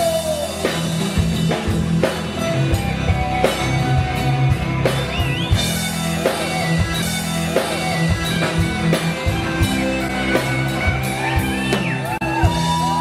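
Filipino rock song recording in an instrumental stretch, with guitar over a drum kit keeping a steady beat.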